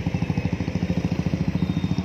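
Motorcycle engine running at low speed with an even, fast beat of about twelve pulses a second.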